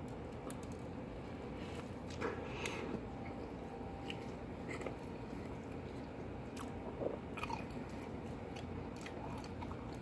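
A man chewing a mouthful of hamburger on soft bread close to the microphone: faint, with small wet mouth clicks scattered through.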